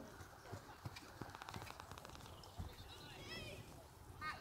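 Soft, faint hoofbeats of a pony trotting on a sand arena surface, heard as irregular low thuds.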